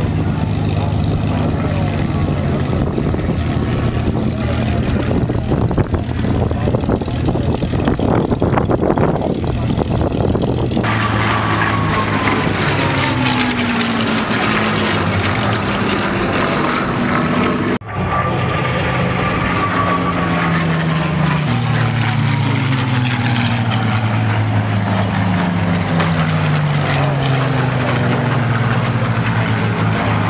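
Piston-engined warbirds, Spitfires and Hispano Buchons with V12 engines, droning steadily. From about a third of the way in, several aircraft pass close in turn, each engine note falling in pitch as it goes by.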